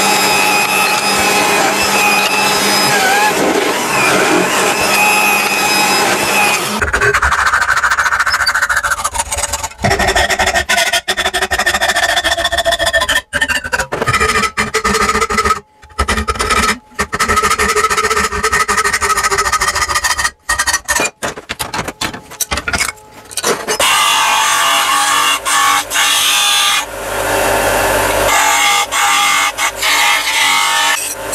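Metalworking shop tools cutting a small metal blanking plate, heard in short edited pieces with background music: a drill press boring through metal plate, then a hand hacksaw cutting metal held in a vice, then a bench disc sander. The sound changes abruptly at each cut.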